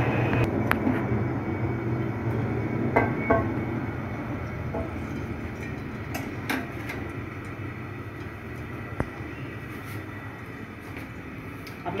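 Gas stove burner running under a frying pan of heating oil, a steady low rush that slowly grows quieter, with a few light clicks of metal utensils.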